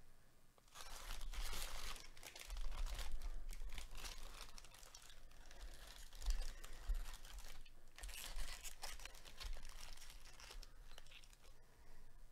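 Crinkling plastic wrappers of sealed Topps baseball card jumbo packs as they are handled and spread out, in two long stretches of rustling with a short pause about eight seconds in.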